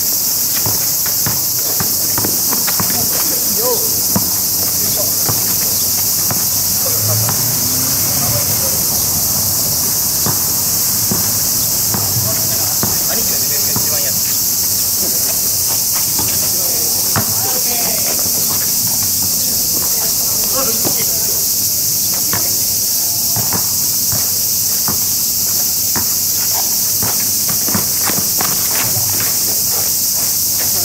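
A loud, steady chorus of insects runs high and unbroken over an outdoor basketball court. Beneath it come scattered sharp knocks of a basketball bouncing on asphalt and players' footsteps, with a few faint voices now and then.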